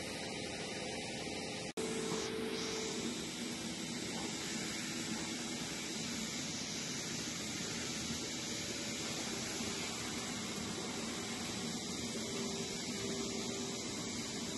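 Steady machinery noise of a working milking parlor: a constant hiss with a faint low hum. It breaks off for an instant just under two seconds in.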